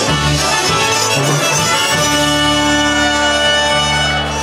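Chicago-style polka band playing live, with two trumpets, accordion and concertina. About halfway through the beat stops and the band holds one long final chord.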